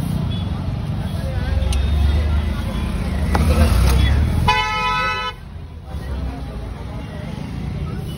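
A vehicle horn honks once, briefly, about halfway through, over a steady low rumble of road traffic that is louder before the honk.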